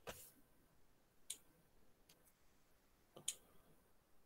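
Near silence broken by four faint, sharp clicks spaced about a second apart, the last one the loudest.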